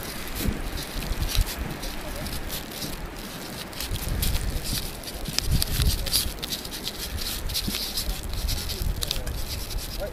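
Felt-tip marker scratching across a nylon banner in short strokes, over low gusty wind noise and faint background voices.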